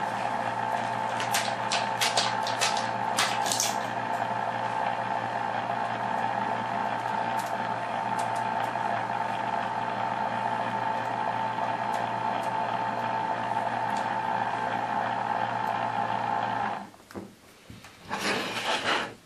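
Rotating beacon's small electric motor and reflector drive running with a steady whir, a few light clicks in the first few seconds. It cuts off suddenly about 17 seconds in when the power is removed.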